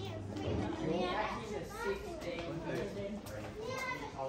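Young children's high-pitched voices talking and calling out.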